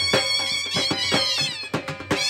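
Two dhol drums beaten with sticks, several strokes a second, under a nasal, high melody from reed pipes that bends and slides in pitch, falling about halfway through.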